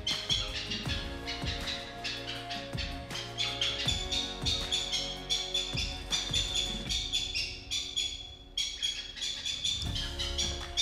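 Background music with sustained notes and a steady pulse, over repeated high chirping calls from cattle egret chicks.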